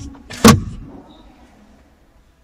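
The plastic glovebox lid of a Citroën C3-XR is pushed shut and latches with one sharp snap about half a second in.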